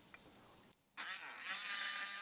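A small handheld electric paint mixer starts about a second in, whirring and rising in pitch as it spins up, then running steadily as it stirs paint in a plastic cup.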